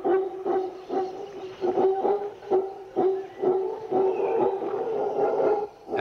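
Mantled howler monkeys howling: a steady, sustained chorus that pulses about twice a second.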